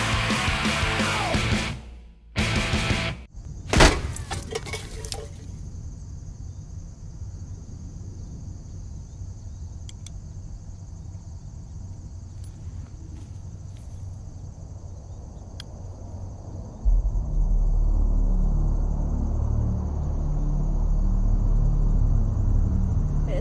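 Edited film soundtrack: loud rock music cuts off about two seconds in, followed by a single sharp bang just before four seconds. Then comes a quieter stretch of outdoor ambience with a steady high-pitched hiss. A loud low rumble sets in near the end.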